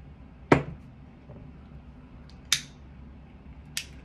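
A glass jar candle set down on a wooden desk with one sharp knock about half a second in, then two lighter clicks as candles are handled, one near the middle and a faint one near the end.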